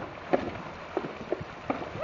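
Horses' hooves splashing through a shallow creek at a trot: a handful of sharp, irregular splashes over the steady rush of the water.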